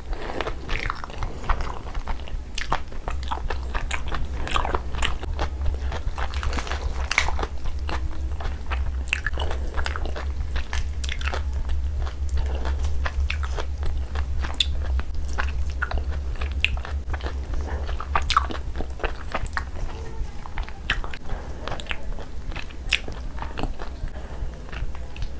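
Close-miked chewing and biting of tandoori chicken, with many short, irregular crunches and wet clicks. A steady low hum runs underneath.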